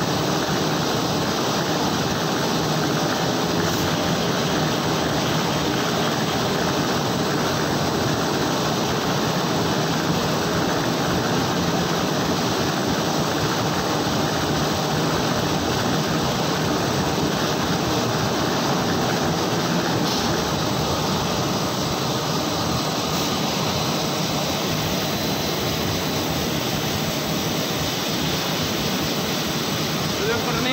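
Roll-fed paper printing press running, a loud, steady mechanical noise as the printed paper web feeds over its rollers.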